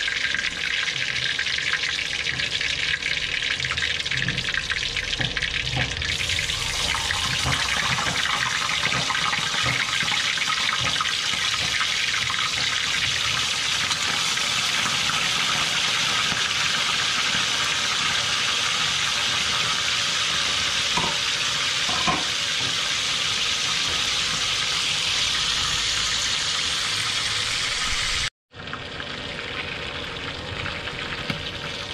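Tilapia pieces frying in hot oil in a steel wok, a steady sizzle that grows fuller about six seconds in. It cuts out briefly near the end.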